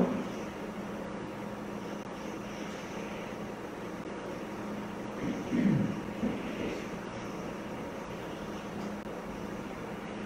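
Room tone: a steady low hum over faint background noise, with one short, low vocal sound falling in pitch a little past halfway.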